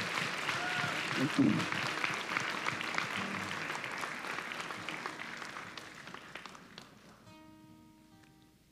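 Congregation applauding, the clapping dying away gradually over about seven seconds. Near the end an acoustic guitar picks up with a few ringing notes.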